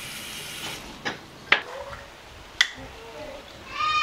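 Bathroom sink tap running, then shut off just under a second in, followed by three sharp clicks of small items being handled at the sink. A high, voice-like call starts near the end.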